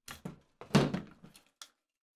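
A few short knocks, then a louder thunk about three-quarters of a second in, from handling a Tippmann M4 airsoft rifle's stock and buffer tube as the spring is pulled out of it.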